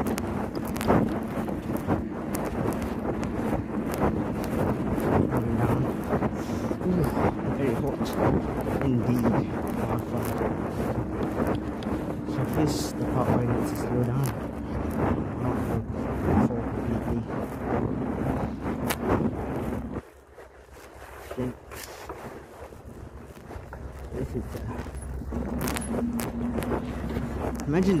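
Wind buffeting and fabric rubbing on a phone microphone taped to a cyclist's shirt while the bike coasts fast downhill, a dense rushing crackle. About two-thirds of the way through, it drops off suddenly, then builds back up as speed picks up again.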